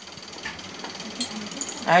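A few faint light clicks of glassware being handled as a drop of methanol is applied from a glass rod in a brown glass bottle, over a low steady hiss; a man's voice begins at the very end.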